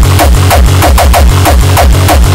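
Hard tekno (frenchcore) track playing loud, with a fast, even kick drum, heavy bass and short falling synth sweeps repeating over the beat.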